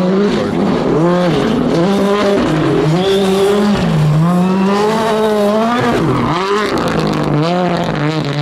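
R5 rally car's turbocharged four-cylinder engine at full throttle on gravel. Its pitch climbs and falls again and again as the car accelerates, lifts and shifts gear through the corners.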